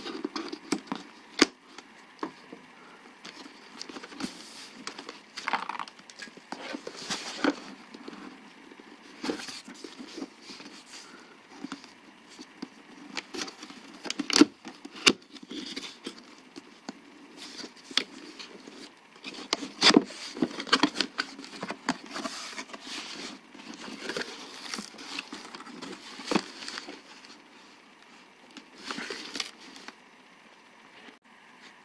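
Hands handling and opening a cardboard box: irregular rustling, scraping and tapping of cardboard, with several sharp knocks, the loudest about 14 and 20 seconds in.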